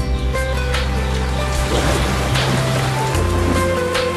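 Theme music for a television weather forecast: sustained synth notes over a low bass that shifts pitch. A rain-like hiss swells up and fades away in the middle.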